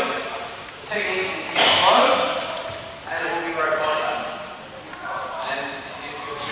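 Speech echoing in a large hall, with one sharp knock or clap about one and a half seconds in.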